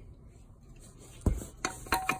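A dull thump a little over a second in, then a quick run of light clicks and taps near the end, one ringing briefly: a center cap being slapped and pressed onto a Rota alloy wheel's hub.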